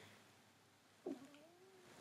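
Near silence in a pause of speech, with one faint, short, wavering cry about a second in that falls sharply in pitch and then rises a little.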